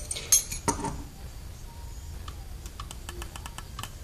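Light metallic clicks and clinks from hand tools and carburetor linkage being handled: two sharp clicks in the first second, then a quick run of faint ticks later on.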